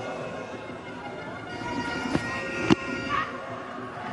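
Short television broadcast music sting of several held tones, sounding over a graphic wipe between replay and live play. A single sharp knock comes about two-thirds of the way through.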